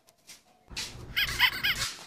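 Short, high-pitched animal yelps, four in quick succession a little past the middle, over low background noise.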